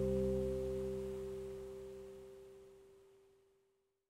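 Final chord of a small acoustic guitar (Mini Martin) and a U-bass ringing out and fading away, the bass dying first and one or two high notes lingering until it is gone about three seconds in.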